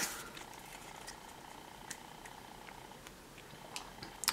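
Faint ticks of paper trading cards being slid apart in the hands, over a faint steady hum.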